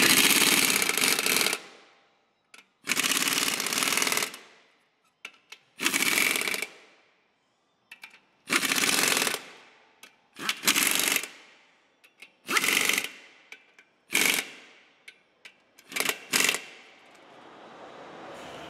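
Pneumatic wrench running in eight short bursts, about a second each and getting shorter toward the end, as it drives the clutch pressure plate bolts down onto a dual-mass flywheel.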